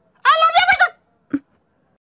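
A short, high-pitched warbling call lasting well under a second, followed by a single click about a second later.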